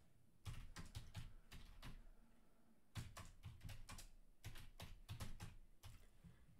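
Faint typing on a computer keyboard: runs of quick keystrokes, with a pause of about a second near the middle.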